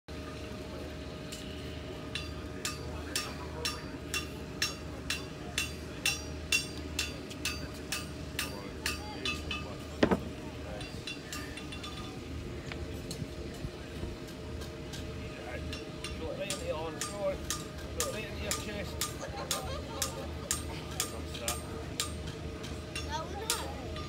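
Sharp, regular clicks at about two a second over a steady hum, with one louder knock about ten seconds in and background voices in the later part.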